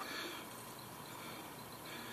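Faint, steady background noise with no distinct event: outdoor ambience in a pause between words.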